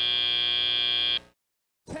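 FIRST Robotics Competition field's end-of-match buzzer, a steady high buzz marking the clock running out, which cuts off abruptly a little over a second in.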